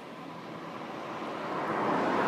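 A rushing noise that grows steadily louder.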